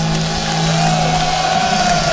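A live rock band's final low held note rings out and stops about one and a half seconds in, as the song ends. A crowd cheers and whoops, and a wavering high tone glides up and down above it.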